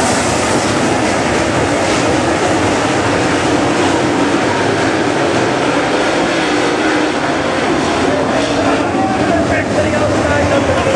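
Dirt late model race cars' V8 engines running at speed around the track in a loud, steady drone, the pitch rising near the end as the cars accelerate.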